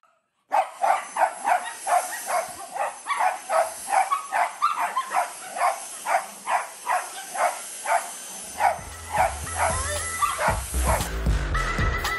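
Small dog barking at a cordless stick vacuum cleaner, short sharp barks about three a second, over the vacuum's steady high-pitched motor whine. Background music comes in near the end.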